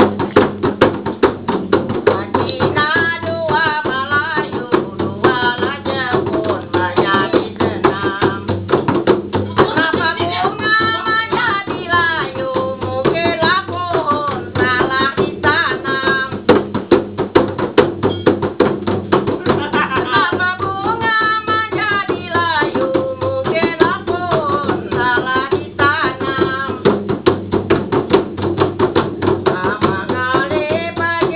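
Two hand-held frame drums played fast and steadily with the hands, with a voice singing phrases over the drumming that come in and drop out several times.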